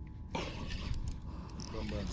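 A fishing reel being cranked by hand while a fish is played, a rough whirring hiss starting about a third of a second in.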